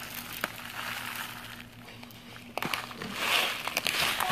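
Uncooked rice pouring from a plastic bag into a plastic bowl: a rustling hiss of grains with scattered small clicks and the bag crinkling. It swells louder about three seconds in.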